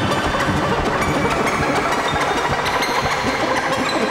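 Moog Grandmother analog synthesizer playing a dense, experimental drone: a fast, fluttering pulse underneath and held high tones that step to new pitches, smeared by delay and reverb.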